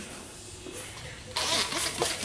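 Trigger spray bottle misting liquid onto a car's polycarbonate headlamp lens, wetting it before protective film is applied: a loud hiss of spray starts suddenly about one and a half seconds in and keeps going.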